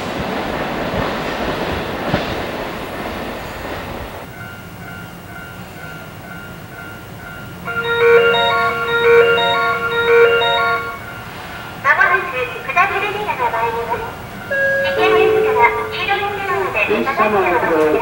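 Train rolling noise for the first few seconds, cutting off suddenly; then a station PA chime of repeated notes plays for about three seconds, followed by a Japanese platform announcement beginning "列車の…お知らせいたします" over the loudspeakers.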